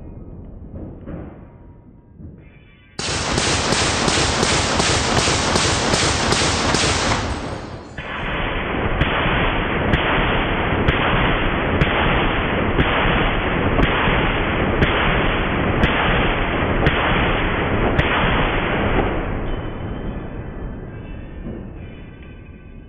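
Heavy .50 caliber machine gun fire and bullet impacts in a long run. It starts suddenly about three seconds in, changes character around eight seconds, carries sharp cracks about once a second, and fades out near the end.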